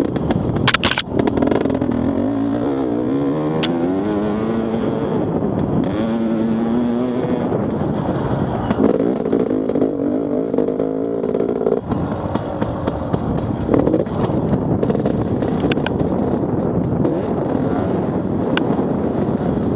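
Off-road enduro motorcycle engine heard from on board, its pitch rising and falling repeatedly as the rider works the throttle over a rough dirt trail. A few sharp knocks come about a second in.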